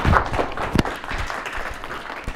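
Audience applauding, many hands clapping at once, thinning out somewhat toward the end.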